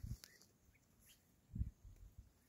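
Quiet outdoor sound with a few faint, short bird chirps, and low dull thumps on the microphone at the start and again about one and a half seconds in.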